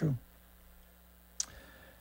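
A single short, sharp click about one and a half seconds in, over a quiet pause with a faint steady hum.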